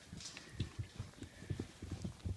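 Soft, irregular low thumps and taps of handling and movement, several a second, as puppies are moved about.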